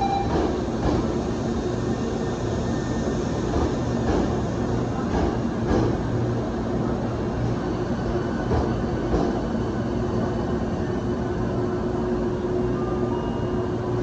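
Hankyu 1300 series electric train standing at an underground platform, its onboard equipment humming steadily, with a few short clicks and knocks.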